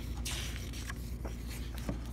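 A page of a picture book turned by hand: a short papery swish about a quarter second in, followed by light rustles and clicks of fingers handling the paper.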